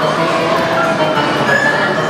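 Electronic music playing steadily from a coin-operated kiddie ride, with the busy hubbub of an indoor play area underneath.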